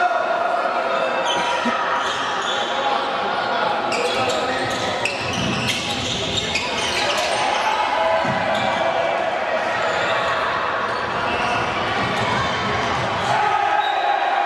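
Handball game sounds in a sports hall: the ball knocking on the court floor, with a run of bounces in the middle, over shouting voices of players and spectators.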